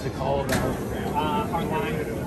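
Indistinct voices talking, with a sharp click about half a second in.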